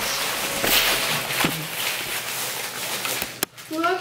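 Rustling handling noise with scattered small clicks as a hand-held camera is moved. It cuts off abruptly about three and a half seconds in, and a voice starts just after.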